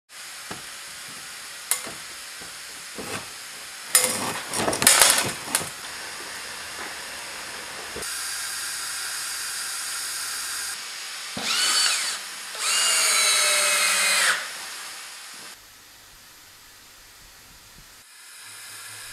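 Workshop sounds during steam-bending preparation of oak. A steady hiss of steam comes from a steam generator, with scattered clicks and short bursts of a power drill about four to six seconds in. Near the middle a louder rush of steam is followed by two pitched whines, the longer lasting about a second and a half.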